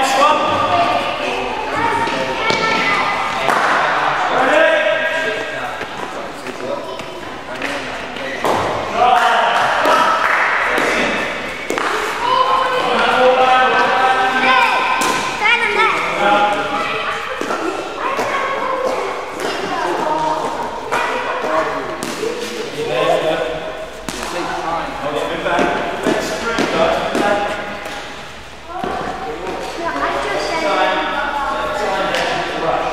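Voices talking, echoing in a large indoor hall, with several dull thuds of a hard cricket ball bouncing on the matting and striking the bat.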